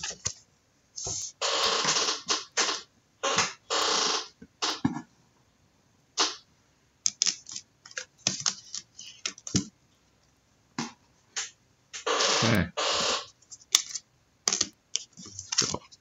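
Handling noise from trading cards and their plastic sleeves and cases: several short bursts of plastic rustling and scattered clicks.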